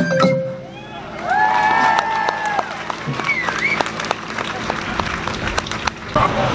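A taiko ensemble piece ending on a long held note, followed from about halfway in by the audience applauding.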